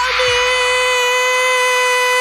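A person's long, loud, high-pitched yell held at one steady pitch, a drawn-out shout of "Armyyy", with a brief catch just after the start.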